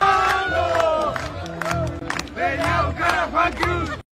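A crowd shouting and cheering over live band music with a steady bass and sharp drum strikes. It cuts off abruptly at the end.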